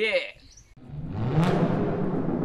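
A child's short cheer, then the logo sting: a loud rumbling swell with a low tone rising in pitch and a sharp hit about one and a half seconds in.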